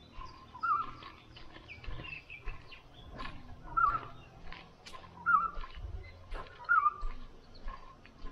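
A bird calling, a short warbling note repeated four times about every one and a half seconds, with scattered light clicks and taps around it.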